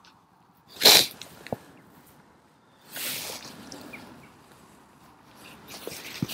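A man's nasal breathing: a short, sharp sniff or snort about a second in, then a longer hissing breath about three seconds in.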